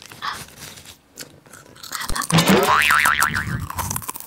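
A cartoon "boing" sound effect with a wobbling pitch, starting about two seconds in and lasting over a second. It is the loudest thing here and follows a few faint crunching clicks of snack eating.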